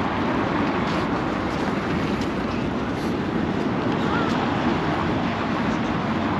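Steady street noise of city traffic, cars running past on a busy road.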